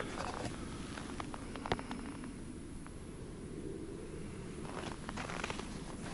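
Footsteps crunching in snow, a few faint crunches near the start and again near the end, over a steady low rumble picked up by a handheld action camera's built-in microphone.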